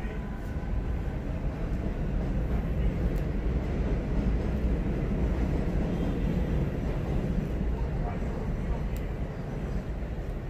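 Low rumble of passing vehicles that swells over the first few seconds and eases toward the end.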